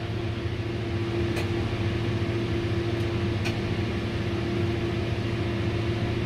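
Steady hum inside a tower crane cab: machinery and fan noise with a constant mid-pitched tone, while the load is held still. Two faint clicks come about one and a half and three and a half seconds in.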